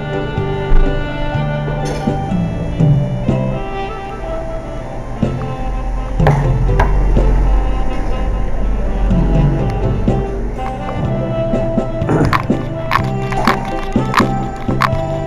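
Saxophone playing a melody over a backing track, with a few sharp clicks near the end.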